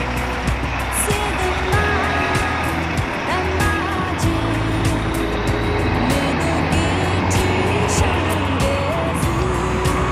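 Outdoor street noise of road traffic with faint music mixed in, under a steady low rumble and many short clicks.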